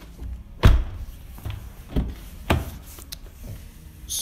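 A car door shut with one heavy thunk about half a second in, followed by a few softer knocks from handling and steps.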